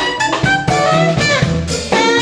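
Live band: saxophone playing a melody over electric bass guitar and drum kit.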